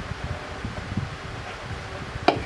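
Low, steady rustling and handling noise close to the microphone, with no distinct knocks or tones.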